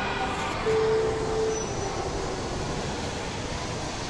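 Steady background noise of a busy indoor shopping mall, with a short held tone about a second in.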